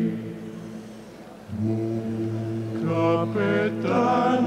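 Dalmatian klapa, a male a cappella group, singing in close harmony. A held chord fades away over the first second and a half, then low voices enter on a new chord, and higher voices with a wavering tone join about three seconds in.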